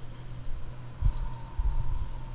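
Faint high-pitched insect chirping, pulsing steadily, over a low steady hum and rumble with a few soft low thumps.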